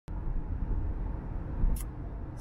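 Road noise inside a car cruising at highway speed: a steady low rumble, with a brief hiss near the end.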